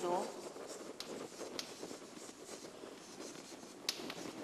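Chalk scratching across a chalkboard as a word is written out by hand, with a few sharp clicks where the chalk strikes the board.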